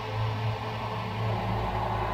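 A steady low drone with a faint hiss over it, from the soundtrack's background score.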